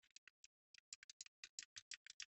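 Faint, rapid metallic clicking of a Honda motorcycle engine's rocker arms being rocked by hand against the valve stems, sparse at first and then about eight clicks a second. The small play being checked is the valve clearance, judged good.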